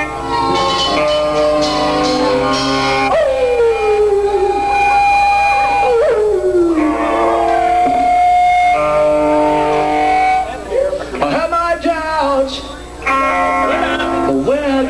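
Live punk rock band recording with distorted electric guitar and bass, no lyrics sung. Long notes slide down in pitch about three and six seconds in, and a wavering, bending line comes near the end.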